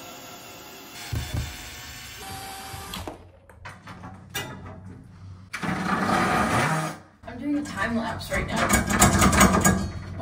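Cordless drill running in several bursts on screws in wall trim and shelf brackets during demolition.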